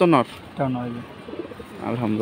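Domestic pigeons cooing: two low coos, one about half a second in and one near the end, after a brief spoken syllable at the start.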